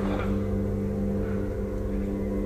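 A low orchestral chord held steady over a deep rumble, from a theatre pit orchestra during a musical.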